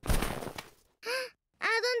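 Cartoon sound effect of a body dropping into deep snow: a sudden soft rushing crash that dies away within about a second. A brief muffled sound follows about a second in.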